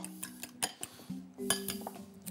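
A utensil clicking against a glass bowl as an egg is beaten, in a run of short irregular clinks with a louder one about one and a half seconds in.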